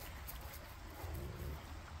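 Faint outdoor background noise: an uneven low rumble with a light even hiss above it, and no distinct event.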